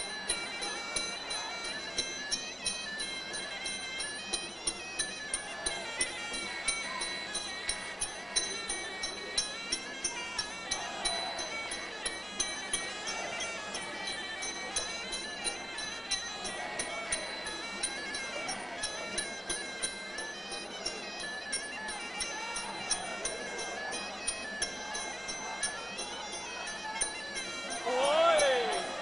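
Muay Thai ring music (sarama): a Javanese oboe (pi java) playing a winding, reedy melody over drums, with the small ching cymbals clinking on a steady beat.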